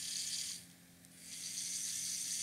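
Small DC gear motor with a plastic wheel, driven by an L298N motor driver at a low fixed PWM speed, running with a steady gear whirr. It stops for about half a second a little way in, then starts running again.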